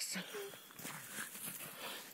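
Two Pyrenean Shepherd dogs scuffling and playing in snow: faint rustling and padding of paws and bodies, with one short faint note about half a second in.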